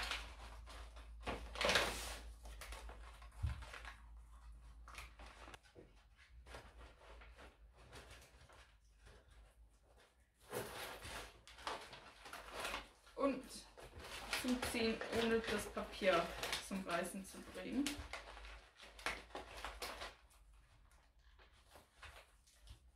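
Glossy Christmas wrapping paper crinkling and rustling in irregular bursts as satin ribbon is wound around it and knotted, busiest in the second half.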